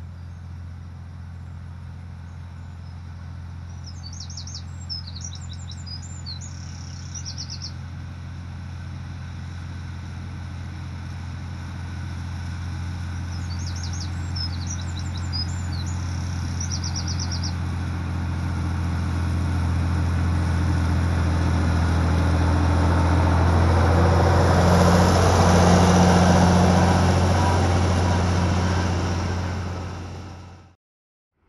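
A John Deere tractor running steadily as it mows toward the microphone, its engine drone growing louder all the way, with rushing noise from the cutting mower building up and loudest near the end. A small bird sings a short trilled phrase twice, near the start and again around halfway.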